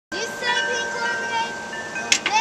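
Metal tube wind chimes ringing with several steady, held tones, with voices talking over them.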